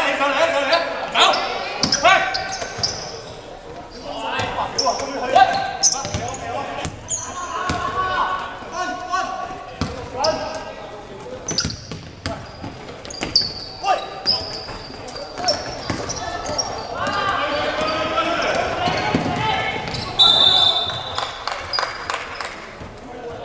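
Players' voices calling out across a large, echoing gymnasium, with a basketball bouncing on the hardwood court in short, sharp knocks.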